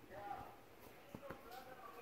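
A few faint snips of small scissors cutting the yarn loops of a punch-needle embroidery, two of them close together a little past a second in, under faint background voices.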